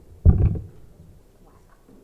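Handling noise as an acoustic guitar is brought up to a microphone: one short, low thump about a quarter of a second in, then faint rustling.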